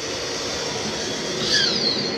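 RV powered roof vent running as its fan is switched off and the lid closed: a steady whirring rush, with a brief whine near the end.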